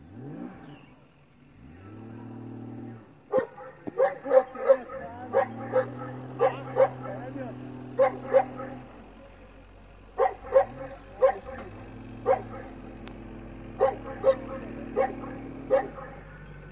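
A dog barking in several runs of quick, sharp barks, the loudest thing heard, over the Jeep Wrangler YJ's engine, which revs up at the start and then runs at held revs in long stretches.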